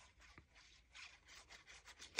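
Faint rubbing and scraping of a glue stick being worked across the back of a small paper postage stamp, in short uneven strokes, strongest about a second in.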